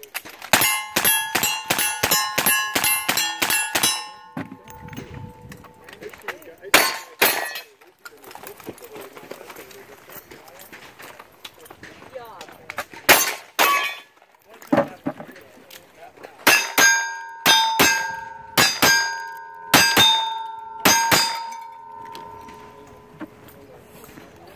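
Rapid gunfire at steel targets, each shot followed by the ring of the struck steel plate. A fast string of about ten shots runs through the first four seconds, a few single shots without ringing come between, and a second string of ringing hits runs from about 16 to 21 seconds.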